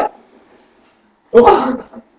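A loud, short yelp-like cry lasting about half a second, about one and a half seconds in, with the end of a similar cry at the very start.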